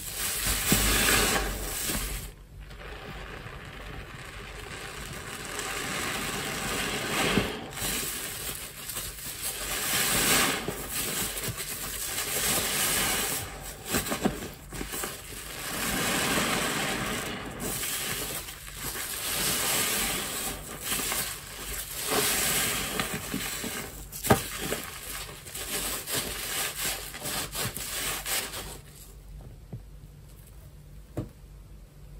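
A soft foam grout sponge soaked with dish soap squeezed and kneaded by hand in soapy water: repeated wet squelches with crackling suds, a squeeze about every three seconds.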